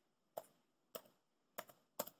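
Computer keyboard keys pressed one at a time, typing in a number code: a few faint separate keystrokes about half a second apart.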